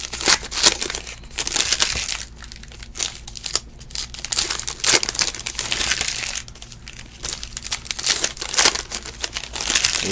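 Foil wrapper of a trading-card pack crinkling and tearing as it is ripped open by hand, then cards being handled and slid through, in irregular bursts of crackly rustling.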